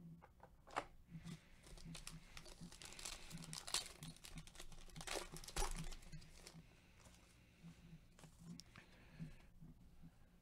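Foil wrapper of a Panini Revolution basketball card pack being torn open and crinkled, in a few seconds of faint, irregular crackling. Sparser, lighter handling ticks follow near the end as the cards are pulled out.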